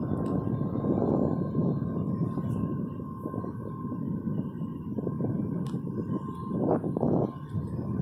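Wind buffeting the microphone in uneven gusts while hanging from a parasail high above the sea, with a faint steady tone above the rush.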